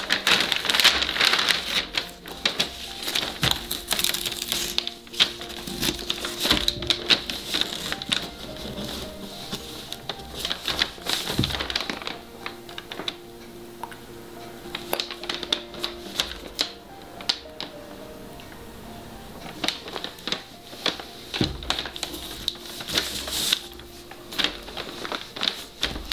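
Paper strips rustling and masking tape being peeled off a paper weaving with irregular crackling and clicking, heaviest near the start and again near the end, over soft background music with held tones.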